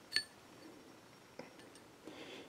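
A light metallic clink with a brief high ring as the steel jaws of a digital caliper close on an engine valve stem, followed about a second later by a fainter click.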